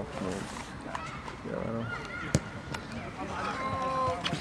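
Indistinct voices of football players and sideline onlookers calling out across the field, with one sharp knock a little over two seconds in.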